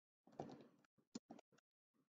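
A few faint computer keyboard clicks as a word is typed, the sharpest a little after a second in.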